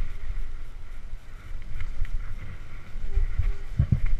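Wind rumbling on the microphone of a helmet-mounted camera while a mountain bike rolls over a rough forest trail, with knocks from the bumps and a heavier jolt near the end.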